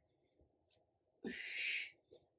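A woman breathing out hard once, a breathy rush of about half a second starting just over a second in, from the effort of holding a forearm plank.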